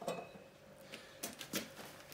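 Faint handling noises: quiet room tone, then a few light clicks and knocks from about a second in.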